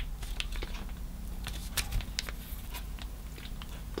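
Small clear plastic bag crinkling in the fingers as it is handled, an irregular scatter of small sharp crackles and clicks.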